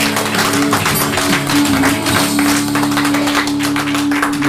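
Gospel backing music holding a sustained chord with hands clapping over it: a hand clap of praise at the close of the song.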